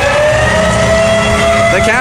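Arena goal horn sounding one long held blast right after a home-team goal, over crowd noise.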